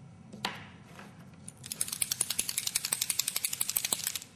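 A single knock about half a second in, then a fast run of light clicks or rattles, about a dozen a second, from about a second and a half in.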